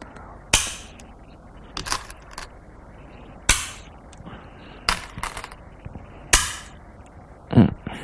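Go stones being set down one after another on a demonstration board, giving a series of sharp clacks about once a second.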